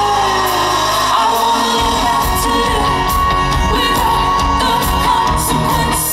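Live pop band with a woman singing into a microphone. The bass holds a steady note at first, then about two seconds in the low end breaks into a pulsing beat with the drums.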